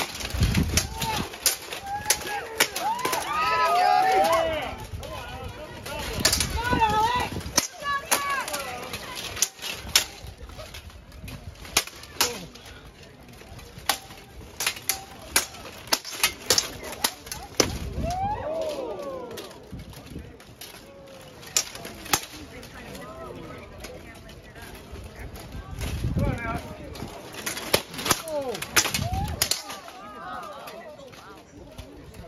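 Swords striking plate armour and each other in an armoured bout: a long, irregular series of sharp hits, sometimes several in quick succession. People shout in bursts over the fight, loudest near the start, a little past halfway and near the end.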